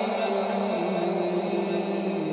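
Chime-like ident music for a TV programme's title card: held ringing tones with sparkling high chimes over them, shifting to a new pitch partway through.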